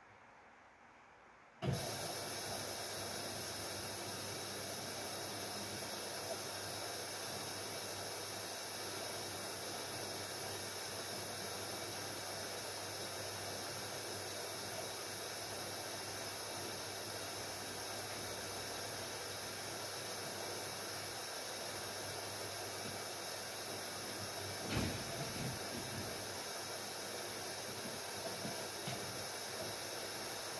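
Haier 7.5 kg front-loading washing machine's water inlet valve opening suddenly a couple of seconds in, water rushing into the machine with a steady hiss that keeps up throughout. A few soft low knocks come near the end.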